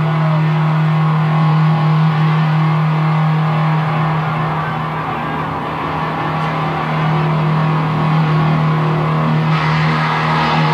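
Live industrial music from an audience recording: a loud, steady low drone under a wash of noisy sound, with no clear beat. Near the end, brighter, higher sounds come in over the drone.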